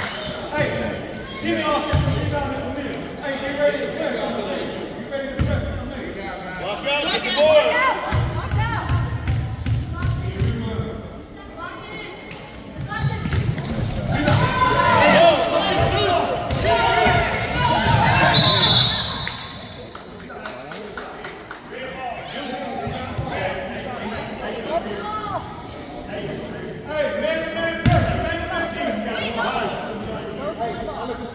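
A basketball being dribbled and bouncing on a hardwood gym floor, amid players and spectators shouting and calling out, all echoing in a large gym. The voices are loudest in the middle stretch of play.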